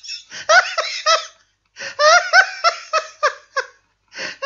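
A person laughing heartily in quick repeated bursts, in two fits with a short break about one and a half seconds in.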